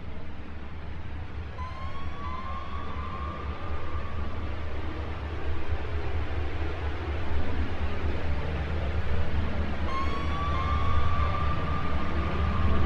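Opening of an ambient album track: a steady, rumbling wash of noise, slowly swelling in level. A whistle-like tone glides up and holds for a few seconds twice, about eight seconds apart.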